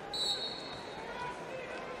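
Basketball arena sound as play resumes: a referee's whistle blows briefly at the start over steady crowd noise, then a ball is dribbled on the hardwood.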